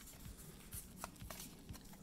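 Faint handling of a stack of Pokémon trading cards in the hand, with a few light ticks as cards are slid through the stack.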